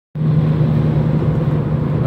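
Car moving at highway speed, heard from inside the cabin: a steady low hum of engine and road noise under a constant rush of tyres and wind.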